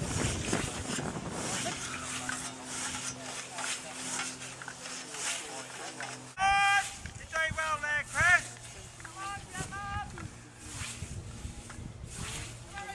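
Scythe blade swishing through long meadow grass in repeated mowing strokes. About six seconds in, people start shouting loudly, and the shouts are the loudest sound.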